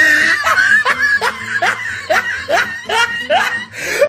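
High-pitched laughter, a run of short rising 'ha' sounds coming about two to three a second.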